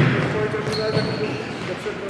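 Futsal ball being struck and bouncing on a wooden sports-hall floor, a sharp knock at the very start, with players' voices calling out and echoing in the large hall.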